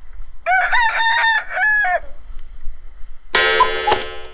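A loud animal-like call of several linked, rising-and-falling notes, lasting about a second and a half. A steady, buzzy pitched tone starts near the end.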